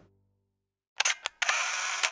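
A transition sound effect after about a second of silence: two sharp clicks, then a short burst of bright noise, like a camera shutter, that cuts off at the end.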